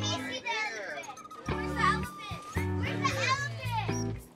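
Children's excited, high voices chattering and squealing over background music with a steady bass line.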